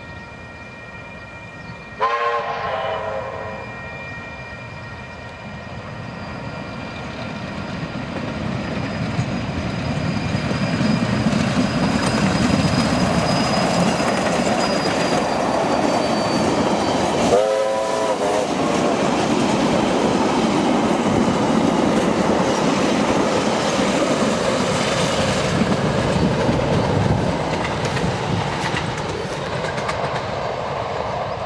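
Steam locomotive Ka 942 and its train: a short whistle blast about two seconds in, then the running noise of the train grows louder as it draws near and stays loud and steady with wheel clatter. A second short whistle blast comes a little past the middle.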